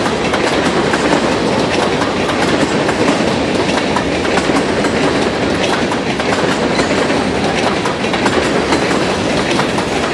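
Empty covered hopper cars of a freight train rolling past: a steady rumble of steel wheels on rail, with irregular clicks and clanks from the wheels and couplers.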